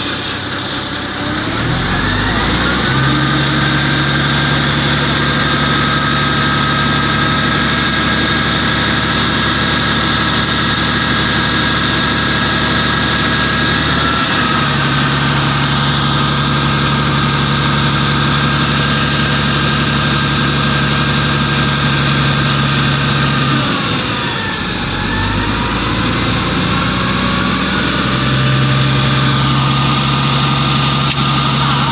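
Heavy truck's engine pulling slowly under load. Its note climbs a second or two in and holds steady. About 24 seconds in it drops and rises again.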